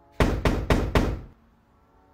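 Four quick knocks on a door, spread over about a second.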